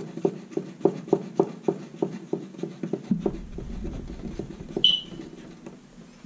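The wire-feed drive mechanism of a Parkside PSGS 120 A1 MIG welder being worked by hand, giving a quick regular run of small clicks, about three a second. A low handling rumble follows, then a single short high metallic ping about five seconds in.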